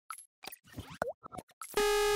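Animated-intro sound effects: a quick run of short pops and blips, one sweeping in pitch about a second in. Near the end a sustained synthesizer tone starts the intro music.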